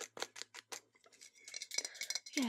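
A quick run of crisp, sharp clicks, about six in the first second, followed by a fainter, thin hiss.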